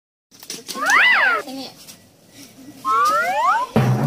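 Cartoon sound effects laid over the footage: a quick whistle-like glide that rises and falls about a second in, then a rising slide-whistle glide near the end.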